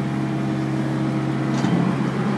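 Yanmar diesel engine of a reefer trailer's refrigeration unit running, a steady, even hum.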